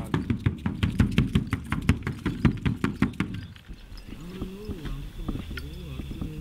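A drum beaten fast, about six strokes a second, in the pace of a shaman's ritual drumming at its climax. The beating stops about three seconds in, and a low, wavering voice follows.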